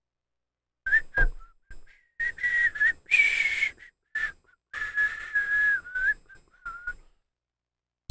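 A man whistling a short tune close to a microphone, a string of clear high notes with breathy hiss, one note held for about a second near the middle. It starts about a second in.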